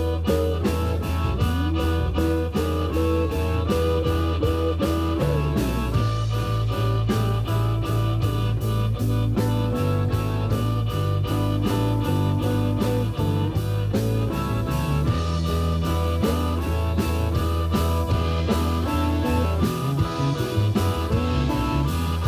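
Live blues band playing: harmonica through the vocal microphone over electric guitar, bass guitar and a drum kit keeping a steady beat.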